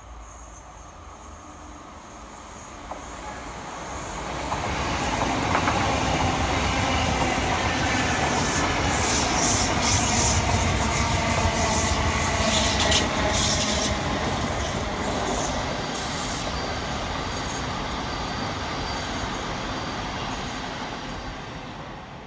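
An electric multiple-unit train running past close by on the rails. Its wheel rumble builds from about four seconds in, is loudest through the middle with high clicks and wheel noise, then fades away near the end.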